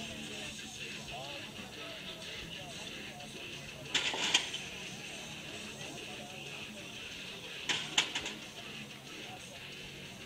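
Spectators chattering, with two short bursts of loud shouting about four seconds apart as the athlete lifts atlas stones onto the platform.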